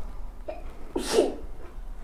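A single short, breathy vocal burst from a man about a second in, quieter than his speech.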